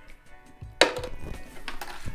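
A guitar pick dropped through the sound hole of an acoustic guitar, landing on the inside of the wooden body with one sharp click about a second in, followed by a few lighter rattles.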